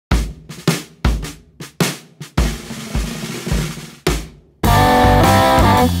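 A drum kit plays a sparse fill of separate kick and snare hits. About four and a half seconds in, an electric guitar comes in loud, holding sustained notes.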